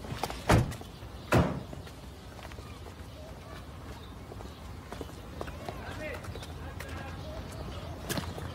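Door of a four-wheel-drive SUV slammed shut: two heavy thumps about a second apart, followed by low outdoor background noise.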